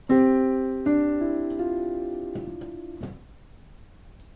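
Piano notes: a two-note fifth struck together, then a few more notes added about a second in, all ringing and fading until they are damped about three seconds in.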